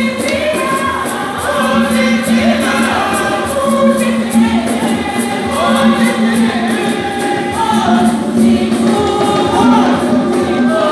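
A church choir singing a hymn together in several voices, with hand claps keeping a steady beat.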